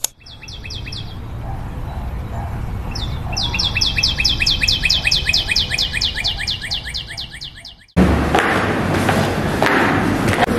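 A bird's rapid trill of repeated falling chirps, about seven a second: a short burst near the start, then a longer run of about four and a half seconds, over a low steady hum. The sound cuts off abruptly about eight seconds in.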